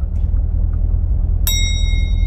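C7 Corvette Grand Sport's 6.2-litre V8 idling with a steady low rumble. About one and a half seconds in, a single bright electronic chime sounds from the car as the traction-control button's second press brings up Performance Traction Management mode.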